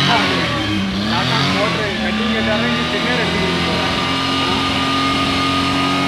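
Car engine running, heard close at the tailpipe: its pitch wavers up and down for the first couple of seconds, then settles and holds steady at a raised speed.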